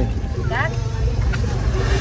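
A steady low rumble with a short snatch of a voice about half a second in.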